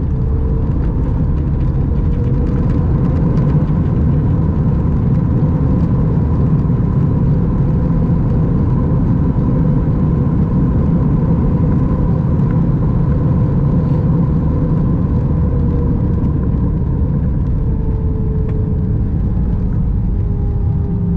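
Steady cabin noise of an Airbus A319 on the ground just after landing: a rumble from the airframe and wheels, with the engines' whine held at two steady tones that dip slightly in pitch near the end.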